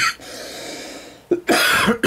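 A man coughs once, briefly, about one and a half seconds in, after a quieter, steady breath-like hiss.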